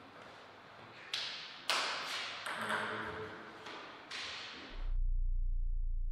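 Five sharp, irregularly spaced taps, each with a short fading tail, followed about five seconds in by a loud, deep, steady hum from the closing logo animation.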